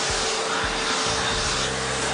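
Shark Navigator Lift-Away vacuum cleaner running with its canister lifted off and the hose wand in use: a steady rush of air with a constant hum under it.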